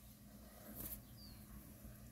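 Near silence: room tone with a faint steady hum and a brief soft rustle a little under a second in.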